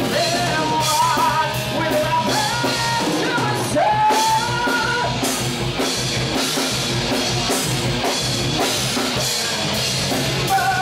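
Loud rock music with a drum kit, guitars and a singing voice, playing continuously.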